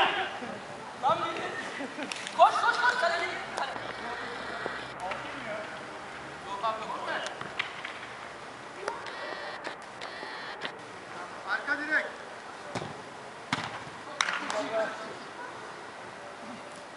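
Football players shouting and calling out in short bursts across the pitch, with a few sharp thuds of the ball being kicked.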